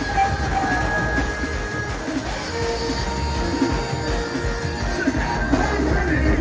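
Live soca music played loud over an outdoor stage's PA speakers, with heavy bass and a long held note through the middle.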